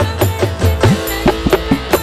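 Campursari band playing live: Javanese gamelan and hand drum strokes, some bending in pitch, over a steady bass line and beat.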